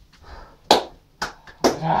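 A few sharp hits as a man jumps up from his seat: one loud one about two-thirds of a second in and two more over the next second. A man's voice starts near the end.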